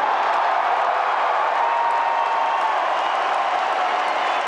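Crowd cheering and applauding in a steady wash of noise, with a thin held tone rising above it about halfway through.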